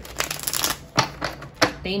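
Tarot cards being shuffled and handled by hand: a short rapid rattling riffle, then two sharp card taps about a second in and again over half a second later.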